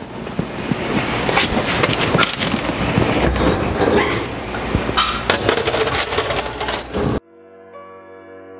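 A metal baking sheet clattering and scraping against the oven rack as it is slid into the oven, with several sharp clanks over a rushing noise. It cuts off suddenly near the end, and soft piano music begins.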